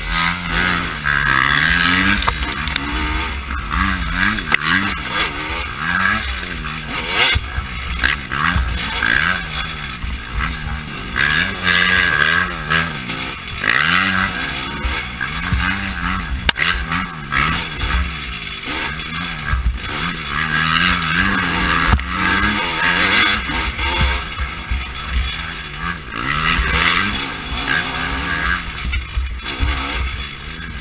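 Off-road motorcycle engine revving up and down over and over, its pitch rising and falling every second or two as the rider works the throttle and gears on a rough trail.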